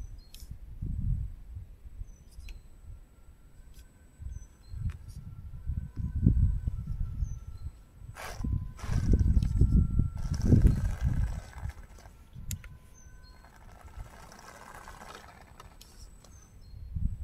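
Gusts of wind rumbling on the microphone, loudest in the middle, over the faint whine of an Absima Sherpa RC crawler's electric motor and gears as it crawls slowly over tree roots, with a few short bird chirps.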